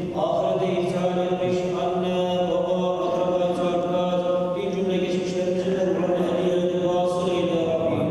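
A male voice chanting a melodic Arabic religious recitation, drawing out long, ornamented notes in phrases a second or two long, over a steady low tone.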